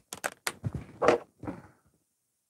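An acrylic quilting ruler being handled on a cutting mat: a few sharp clacks in the first half second, then softer knocks.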